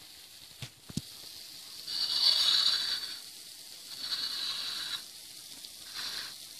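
Hot cooking oil sizzling, swelling into a louder hiss about two seconds in and again about four seconds in, with a couple of small clicks near the start.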